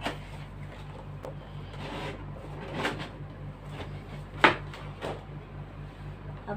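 Cardboard box of a tablet stand being opened by hand: the lid and insert scraping and rustling, with a few light knocks and one sharp snap of cardboard about four and a half seconds in.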